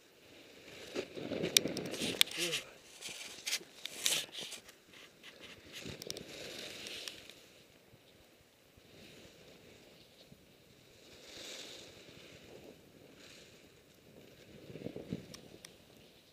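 Skis or a snowboard sliding and turning through deep powder snow, with irregular swishes and crunches and clothing rustling against the body-mounted microphone; the noise is loudest in a cluster of bursts in the first few seconds, and swells again near the end.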